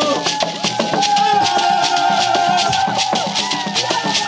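Music carried by hand rattles shaken in a fast, even rhythm, with a long held note sounding above them for a couple of seconds.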